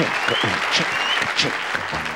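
Studio audience applauding, with whistles and cheers rising through it.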